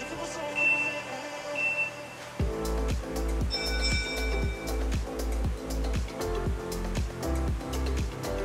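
Three short electronic beeps about a second apart, counting down, over quiet background music. Then about two and a half seconds in, upbeat workout music with a steady bass beat starts.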